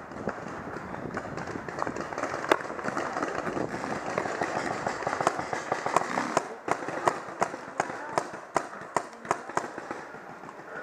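Paintball markers firing: scattered sharp pops, a few per second and coming more often in the second half, over a noisy field background.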